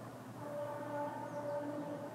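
Distant train horn sounding a steady chord of a few tones, starting about half a second in, with a brief dip in the middle.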